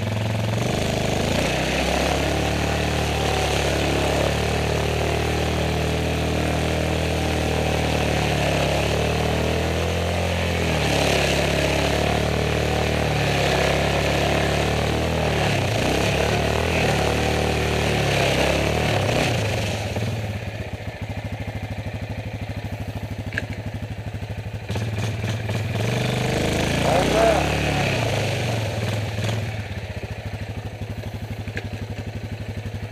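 Yamaha Grizzly 450 ATV's single-cylinder engine running under load as it pushes through mud and water, its pitch rising and falling with the throttle. It settles to a lower, quieter note about twenty seconds in, then revs up again near the end.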